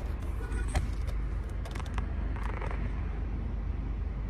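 A car idling: a steady low rumble heard from inside the cabin, with a few light clicks and knocks.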